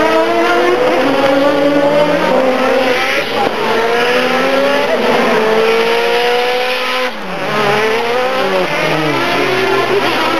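Two race cars, a Subaru WRX and a Mitsubishi Lancer Evolution, are accelerating hard close together, their engine notes overlapping. Each note climbs and drops back at every upshift. About seven seconds in, the notes fall sharply as the cars lift and downshift, then climb again.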